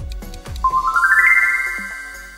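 Background music with a steady beat of about two thumps a second that gives way, about half a second in, to a quick rising run of chime-like notes that ring on and slowly fade: a reveal sound effect marking the end of the countdown.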